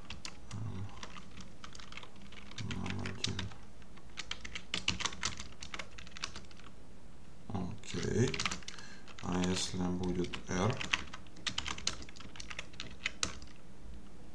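Computer keyboard typing in quick bursts of keystrokes with short pauses between them.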